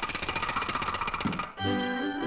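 A fast, even rattling clatter, a cartoon sound effect that cuts off suddenly about one and a half seconds in. The soundtrack music comes back right after it.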